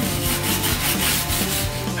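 A brush scrubbing a wooden tree branch in quick back-and-forth strokes, a steady scratchy rubbing of bristles on wood, with faint background music underneath.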